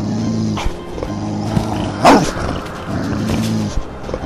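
Monster-style growling and snarling of a werewolf, done as a human or dubbed voice, over background music, with one sharp, loud snarl about two seconds in.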